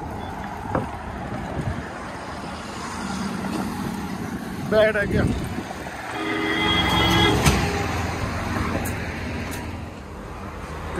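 Road traffic passing close by on a highway bridge, with a bus alongside. Just past the middle, a vehicle horn sounds one steady note, held for about a second and a half as the traffic noise swells.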